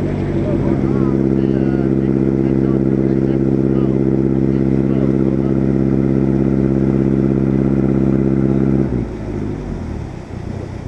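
The UC3 Nautilus submarine's engine running steadily at one even pitch while under way, its level dropping suddenly about nine seconds in.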